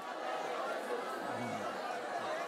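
Congregation praying aloud all at once: a low, steady murmur of many overlapping voices.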